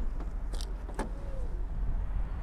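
Steady low outdoor rumble with two light clicks, a faint one about half a second in and a sharper one about a second in, as the boot of a car is handled.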